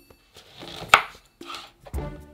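A chef's knife cutting through a lemon and striking a wooden butcher-block board: one sharp knock about a second in, then a duller thud near the end.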